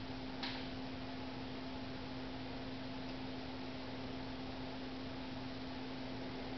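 Steady low electrical hum over an even hiss, with one faint click about half a second in.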